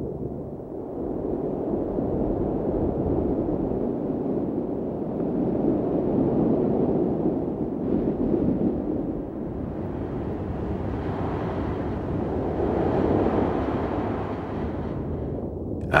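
Low, rushing rumble of moving water with no tune, swelling around the middle and again near the end: underwater ocean ambience.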